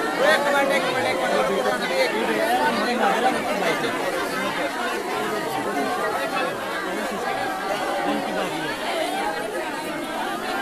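Many women wailing and crying aloud at once in mourning, their overlapping voices rising and falling without letup.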